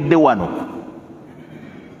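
A man's amplified voice ends a phrase with a drawn-out falling syllable in the first half second, then trails off into quiet room tone.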